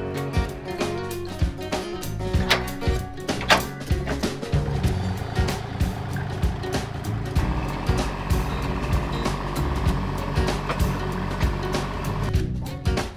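Background music with a regular beat.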